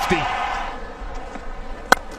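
Steady background of crowd noise at a cricket ground, then near the end a single sharp crack of a cricket bat striking the ball for a big hit.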